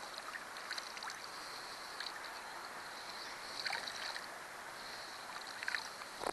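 Gentle water sounds at the side of a small boat, with small splashes where a just-released catfish swims off, over a steady high-pitched hiss that comes and goes.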